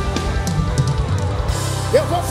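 Live band playing: drum kit hits over held chords, electric guitar and electric bass.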